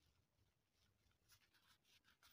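Very faint scratching of a pen writing on notebook paper, a few short strokes.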